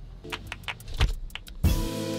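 A quick, uneven run of sharp clicks and knocks with one heavier thump about a second in, then background music begins near the end.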